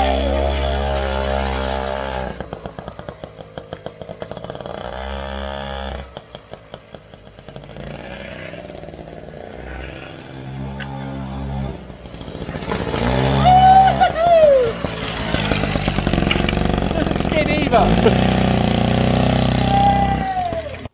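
Small old two-stroke moped engine revving as the bike rides off. It fades into the distance, comes back and passes close with its pitch falling, then revs near the end, with laughter over it.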